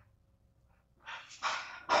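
About a second of near silence, then a woman's breathy intake of breath lasting nearly a second, just before she speaks.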